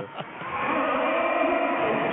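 Basketball arena crowd noise, a steady din that swells about half a second in.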